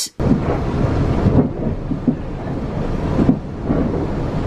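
Steady loud rumble of a moving train, heard from inside the carriage.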